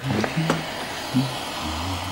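Studio audience laughing.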